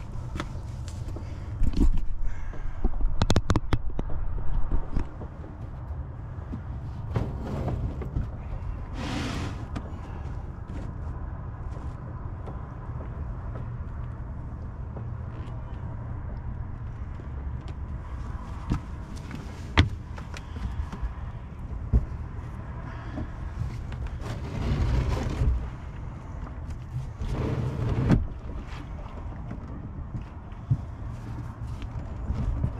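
Knocks, taps and scrapes as interlocking plastic deck mat tiles are pressed into place and a portable plastic fuel tank is shifted onto them, over a steady low rumble. Sharp single knocks stand out about 20 and 22 seconds in.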